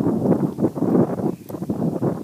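A man's voice vocalizing without clear words while he signs, dipping briefly about one and a half seconds in.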